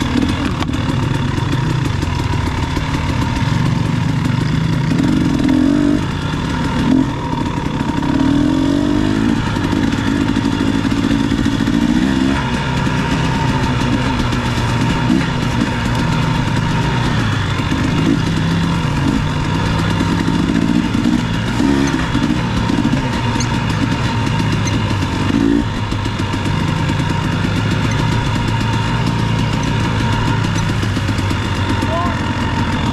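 Dirt bike engine running as it is ridden along a trail, its pitch rising and falling as the throttle is opened and closed.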